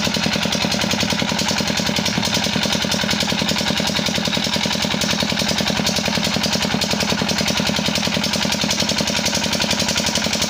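Single-cylinder Petter diesel engine running steadily with an even, fast beat as it drives a tubewell pump, with water pouring and splashing from the delivery pipe into a concrete tank.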